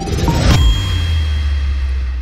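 Intro logo sting: a ding with a deep bass tone that swoops down about half a second in and then holds, with a thin high ring over it.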